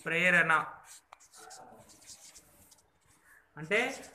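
Felt-tip whiteboard marker writing on paper: faint scratching strokes through the middle, between a short spoken phrase at the start and another near the end.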